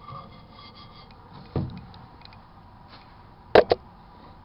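Faint rubbing and scraping of a Brillo steel wool pad cleaning the inside of a microwave oven, with a dull thump about a second and a half in and two sharp clacks in quick succession near the end.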